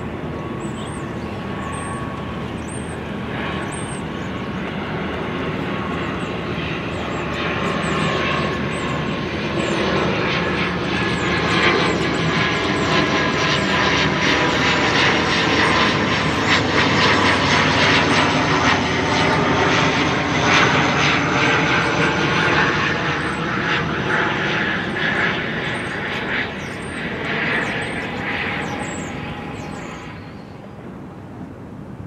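Engine drone of a passing aircraft. It swells to its loudest around the middle, with its tones sliding slowly in pitch, then fades away toward the end.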